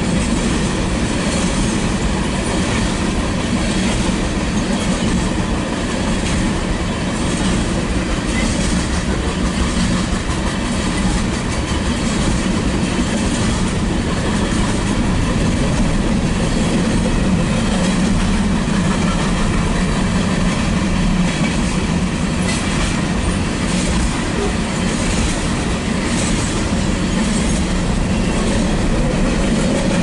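Freight cars of a manifest train rolling steadily past, a continuous rumble with the wheels clicking irregularly over the rail joints.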